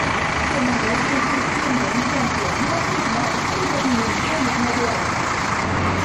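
Busy street ambience: steady traffic noise with a vehicle engine running, and indistinct voices of people in the street.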